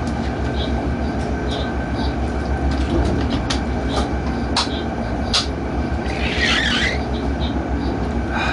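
Electric freight locomotive running along the line, heard from inside the driver's cab: a steady low rumble with a few sharp clicks, and a short hiss about six and a half seconds in.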